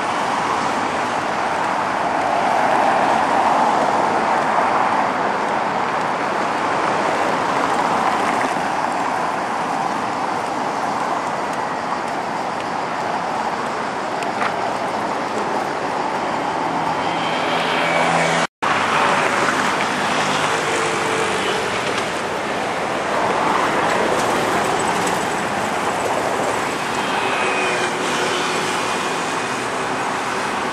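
City road traffic passing alongside: a steady rush of car tyres and engines that swells as vehicles go by, with the hum of a heavier engine a little past the middle. The sound cuts out for an instant just past the middle.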